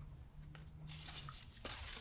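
Clear plastic packaging crinkling and rustling softly as a plastic lacrosse head is handled, with one small sharp click late on.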